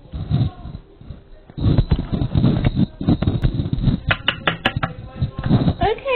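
Handling noise close to the microphone: rustling and thumps as the handheld camera and small toys on a wooden desk are moved about, with a quick run of sharp clicks a little past the middle.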